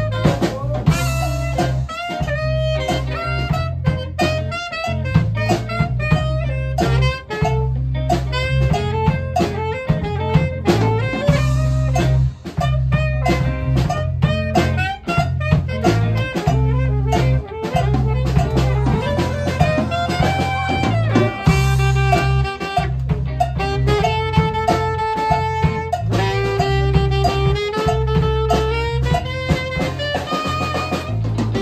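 Live blues-rock band playing an instrumental stretch: an alto saxophone solos over electric guitar, bass guitar and drum kit. The lead moves in quick, bending phrases at first, then in long held notes that step up and down from about twenty seconds in.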